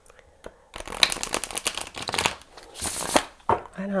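A deck of tarot cards being shuffled by hand: a quick run of papery flicks and rustles starting about a second in and stopping shortly before the end.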